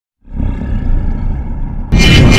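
Logo-intro sound effect: a deep roaring rumble swells up out of silence about a quarter second in, then a louder blast hits just before the end.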